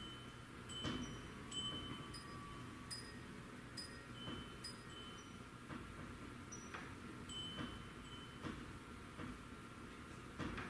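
Metal tube wind chime ringing faintly, its tubes striking one another every second or so with high, lingering tones, set swinging by the earthquake's shaking. Faint low knocks sound underneath.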